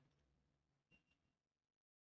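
Near silence: faint room tone with a faint click about a second in.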